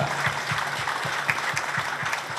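Audience applause: many people clapping steadily together.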